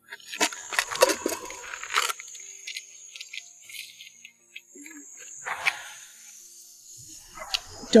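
Night insects, crickets, chirring steadily in a high thin tone, with a cluster of rustling and clicking noises in the first two seconds and a few more brief ones later.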